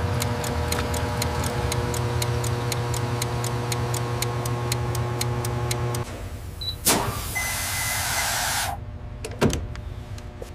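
Petrol pump running while fuelling, a steady hum with rapid, regular ticking, cutting off about six seconds in. Then a click and a hiss of air lasting under two seconds, as a tyre inflator hose is put on a tyre valve, followed by a few light clicks.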